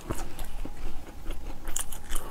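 A person biting and chewing a piece of spicy packaged Chinese snack close to the microphone: a run of short, irregular wet mouth clicks and chewing noises.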